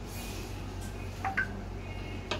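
Two short electronic beeps a little past a second in, over a steady electrical hum, with the faint rustle of a satin saree being spread out.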